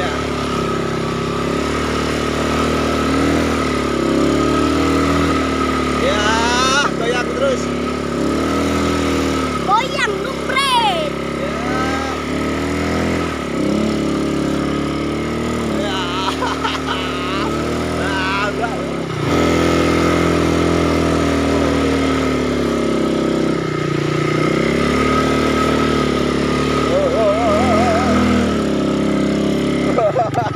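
A small ATV engine running and being revved over a muddy track, its pitch rising and falling with the throttle.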